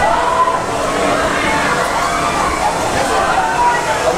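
Wind buffeting the microphone, with drawn-out voices calling in the background.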